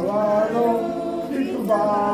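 Several voices singing a Hindu devotional prayer together without instruments, in long held notes.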